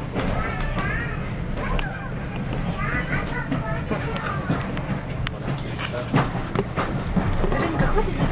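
Railway carriage running along the line, a steady low rumble with irregular clicks and knocks from the running gear, under people's voices chattering in the carriage.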